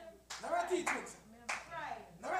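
Faint voices speaking briefly, quieter than the sermon around them, with two sharp claps, one about a third of a second in and one about a second and a half in.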